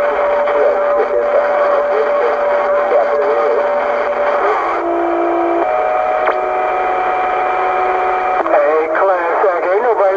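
Cobra 148 GTL CB radio receiving distant stations: garbled, distorted voices mixed with steady whistling tones. The whistles shift pitch a few times around the middle, and a warbling voice comes back near the end.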